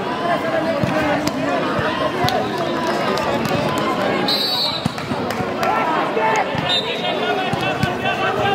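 Many voices of players and spectators shouting and chattering at a volleyball match, with scattered thuds of a ball bouncing on the court. About halfway through there is a short blast of a referee's whistle, signalling the serve.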